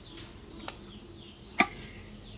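A faint click, then a sharp louder click about one and a half seconds in: the electric cooker being switched on to start cooking.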